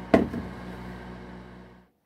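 A single sharp knock as the microwave is handled, followed by a steady low electrical hum that fades and cuts off just before the end.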